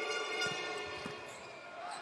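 A volleyball bounced on the indoor court floor by the server before serving: a few dull thuds about half a second apart, over a steady arena hum.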